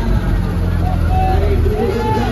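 Loud DJ sound system playing heavy, steady bass, with a voice carried over it.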